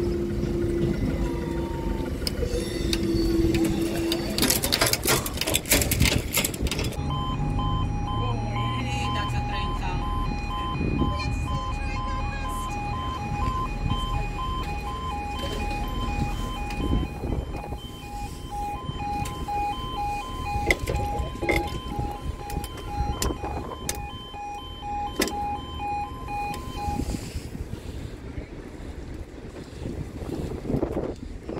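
Level crossing warning alarm sounding: two high tones alternating in short, even beeps. It starts about a quarter of the way in and stops near the end, warning of an approaching train as the barriers lower. A steady low hum runs for the first few seconds.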